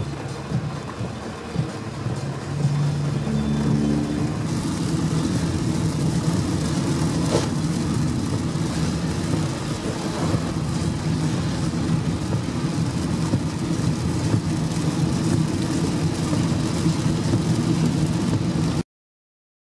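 Cabin noise of a car driving through torrential rain: the engine and tyres on the wet road, with rain on the car, growing louder a few seconds in.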